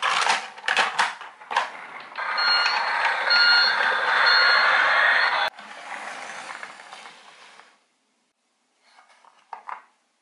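Plastic toy wheel loader clattering as it rolls down a toy transporter's ramp, then a toy's electronic sound module plays a steady engine noise with a reversing beep repeating about once a second, cutting off suddenly. A softer rolling noise follows, and a few light plastic clicks near the end.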